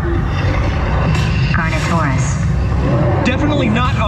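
Loud, steady low rumble from a Time Rover dark-ride vehicle moving through the DINOSAUR ride, with short bursts of voices about a second in and again near the end.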